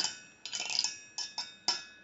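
The fins of a passively cooled GT 1030 graphics card's heatsink being plucked with a plastic stick, played as a joke instrument. There are about seven short metallic ticks, each ringing briefly at a high pitch, in quick uneven succession.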